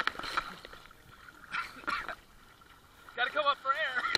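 Pool water splashing as children thrash and jump in, heard from a camera at the water's surface; near the end a child's voice calls out in a wavering shout.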